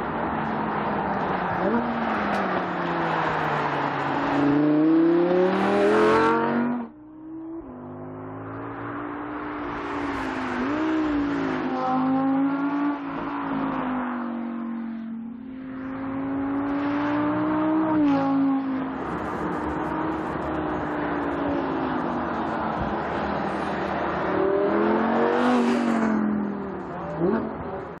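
Audi R8 V10 Spyder's naturally aspirated V10 engine driven hard, its pitch repeatedly climbing under acceleration and falling back as it shifts or lifts off. The sound drops away suddenly about seven seconds in, and near the end the revs climb steeply again.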